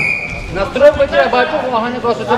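A short, single referee's whistle blast right at the start, which restarts the wrestling bout. It is followed by raised voices calling out from the hall.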